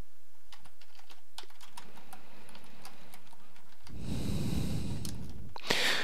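Typing on a computer keyboard: a quick run of key clicks over about three seconds, then they stop.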